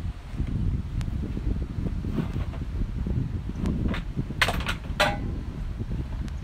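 Wind rumble on the microphone, with a single click about a second in and a quick run of sharp clicks and knocks between about four and five seconds in, as gear is handled in the bed of a pickup under a raised camper-shell hatch.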